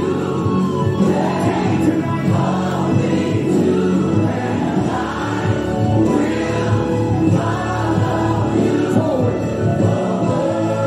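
Gospel music with a choir singing over a steady instrumental backing.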